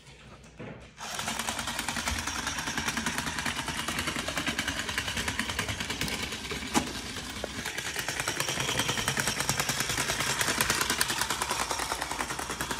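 Small motor and gears of a walking toy horse running, with rapid even clicking that starts about a second in; one sharper knock near the middle.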